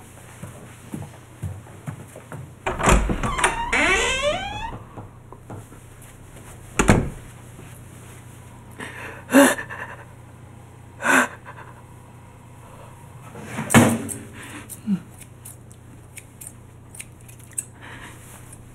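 A woman's wordless, disgusted groan, then short gagging sounds a few seconds apart, with one loud dull thump in between. Near the end comes a quick run of small sharp clicks: scissors snipping at the fabric of a jacket.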